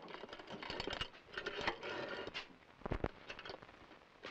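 Footsteps and small clicks on a hard floor, with a heavier knock about three seconds in.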